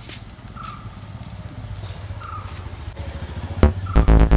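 Low outdoor rumble that slowly grows louder, with a few short bird calls. Near the end, loud electronic music with heavy beats cuts in.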